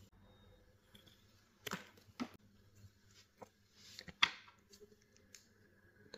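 A few faint, scattered clicks and a short snip as a small gold-plated speaker plug is handled and a piece of red heat-shrink tubing is cut to length and fitted over it.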